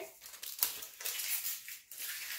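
Paper rustling and sliding on the tabletop as a cut-out construction-paper shape is handled, in a few short scrapes, the loudest about half a second in.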